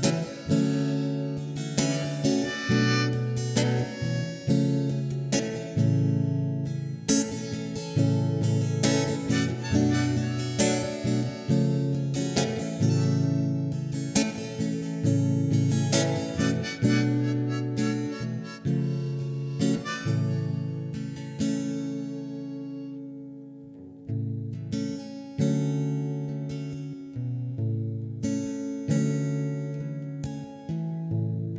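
Acoustic guitar strummed with a harmonica played from a neck holder: the instrumental opening of a song, before the vocals come in. About three-quarters of the way through, the strumming dies away briefly and then starts up again.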